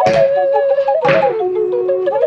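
Two knocks of a fingerboard landing on wood, about a second apart, each with a short smear after it, over background music with a flute-like melody.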